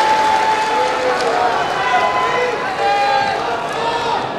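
A large crowd of many voices calling out together in unison, their long held calls rising and falling over a general crowd hubbub.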